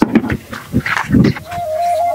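A voice crying out in a few short calls, then a steady held musical tone begins about one and a half seconds in.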